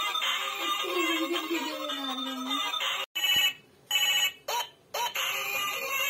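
A toy telephone playing an electronic tune. About halfway through, the tune breaks off into two short electronic ring bursts with pauses between them, then the tune starts again.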